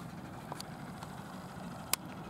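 Miniature steam train approaching along the track, heard as a faint steady running noise with no distinct chuffs, with one sharp click near the end.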